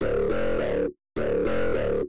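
Playback of polyphonic music loops: two chordal phrases, each just under a second long, with a brief break between them. The loops are not yet fitted to the song's chords and key, so the intro sounds odd.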